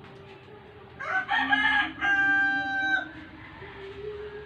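A rooster crowing once, starting about a second in and lasting about two seconds, a rough opening that ends on a long held note.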